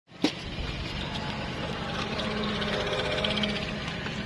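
A single sharp crack about a quarter second in: an air rifle shot fired at a board of balloons. A steady low background hum follows.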